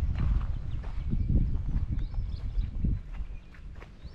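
Footsteps of someone walking along a path with a handheld camera, under a heavy, uneven low rumble like wind on the microphone; the rumble eases about three seconds in.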